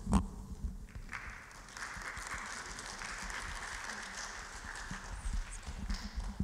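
Audience applauding steadily, following a few knocks of a handheld microphone being handled at the start.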